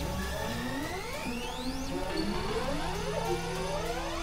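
Experimental electronic synthesizer music: many overlapping tones gliding upward, one high sweep rising and cutting off about two seconds in, over a low steady drone.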